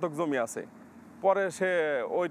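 Only speech: a man talking, with a short pause near the middle.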